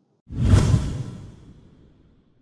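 A whoosh transition sound effect with a deep low rumble, swelling suddenly about a quarter second in and fading away over about a second and a half.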